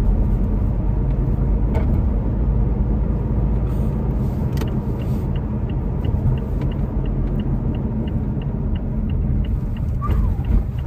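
Car driving, heard from inside the cabin: a steady low rumble of engine and tyre noise, with a run of light, evenly spaced ticks in the second half.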